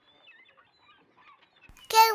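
Near silence with only faint scattered sounds, then a high-pitched voice starts an excited exclamation at the very end.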